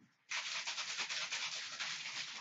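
Fast, dense scratchy rubbing close to the microphone, starting abruptly about a third of a second in and carrying on in quick, uneven strokes.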